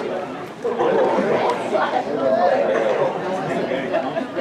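Several spectators' voices talking at once, an indistinct babble of chatter.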